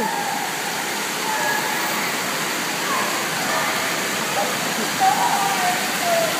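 Steady rush and splash of water from an indoor water-park play structure right after its tipping bucket has dumped, with faint voices in the background.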